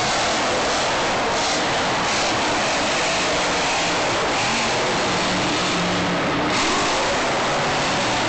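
Monster truck's supercharged V8 revving and rising and falling in pitch as the truck jumps a dirt ramp and drives on. It sits under a dense, steady wash of arena noise, loud and harsh through a phone microphone.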